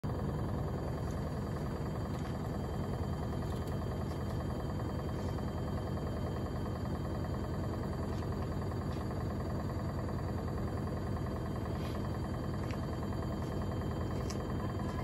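Gorenje UseLogic front-loading washing machine on its 1400 rpm spin cycle with a very unbalanced load: a steady, even rumble of the spinning drum, with a few faint ticks over it.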